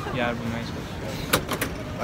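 Voices and background noise of a busy pedestrian street, with a few sharp clicks in quick succession a little over a second in.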